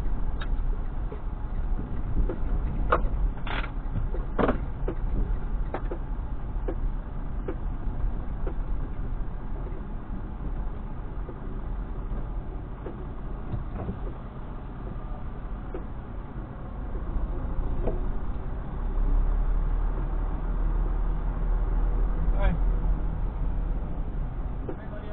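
Semi-truck diesel engine running at low speed, heard from inside the cab as the truck creeps along, with a few sharp clicks in the first five seconds. The engine rumble grows louder from about nineteen seconds.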